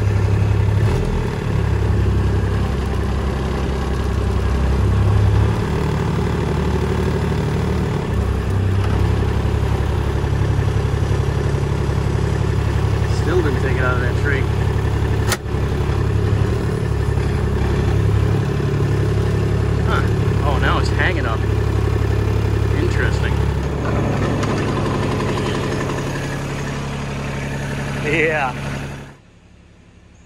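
Engine of a Kubota utility vehicle running steadily under load as it pulls a cable to yank a hung-up tree down, heard from inside the cab. There is a single sharp click about halfway, and the engine sound cuts off suddenly just before the end.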